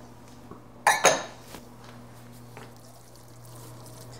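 Two quick, sharp clatters of kitchenware close together about a second in, a wooden spoon against a skillet, then a few faint clicks over a low steady hum.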